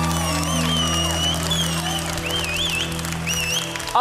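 A live band's final held chord rings under audience applause, with high, wavering whistles over the clapping. The chord fades out just before the end.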